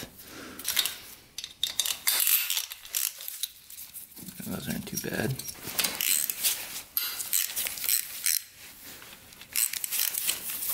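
Socket wrench on an extension bar working the valve-cover bolts on a Yamaha XT500's cylinder head: irregular metallic clicks and light clinks as the bolts are loosened.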